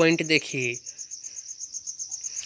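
A steady, high-pitched trill of rapid even pulses runs on in the background. A man's voice says "point" at the start, then the trill carries on alone.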